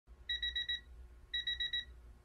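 Electronic alarm-clock-style beeping: two bursts of about five quick, high beeps, about a second apart.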